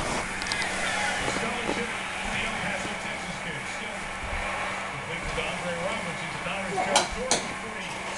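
Television sound playing in the room: a steady hum with faint, indistinct voices. Two sharp clicks come about seven seconds in.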